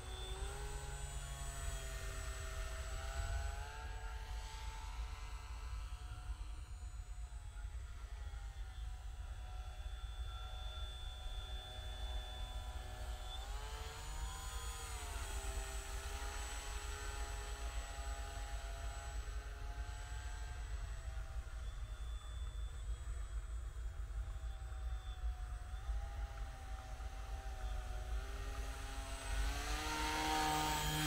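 Motor and propeller of a radio-controlled paramotor (model paraglider) running in flight, a pitched hum whose pitch rises and falls in several slow glides as the throttle changes, with a steady low rumble underneath. It grows a little louder near the end as the model comes close.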